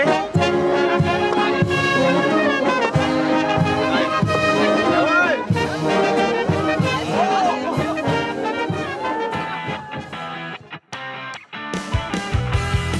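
Village brass band playing, trumpets and trombones carrying a tune over a steady beat; the music dies away near the end.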